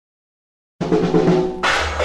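Silence between two tracks, then a rockabilly record starts abruptly a little under a second in, opening on snare and bass drum with the band.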